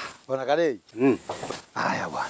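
A person's voice in short utterances that rise and fall in pitch, with brief gaps between them.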